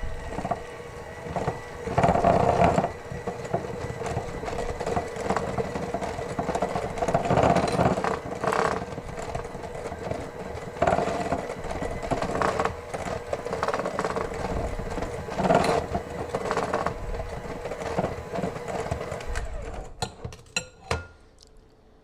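Electric hand mixer with wire beaters running steadily through a soft butter-and-egg batter in a glass bowl, its sound swelling and easing as the beaters are worked around the bowl. The motor cuts off a couple of seconds before the end, followed by a few short clicks.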